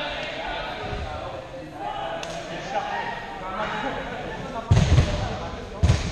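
Two loud thuds about a second apart near the end, typical of dodgeballs striking the gym floor or walls during play, over the chatter and shouts of players.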